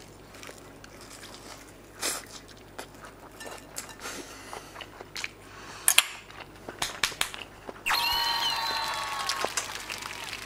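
Crisp crunching as a bite of breaded, deep-fried ham and cheese cutlet (hamukatsu) is chewed, with scattered crunches and sharper ones about two and six seconds in. Near the end a high held tone sounds for about a second and a half.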